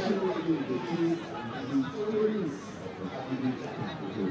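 Several indistinct voices chattering and calling out in a football stadium, picked up by the broadcast's pitch-side microphones, with no single clear speaker.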